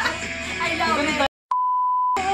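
A song with singing plays, is cut off abruptly just past the first second, and after a brief silence a steady, high-pitched censor bleep tone starts with a click and holds.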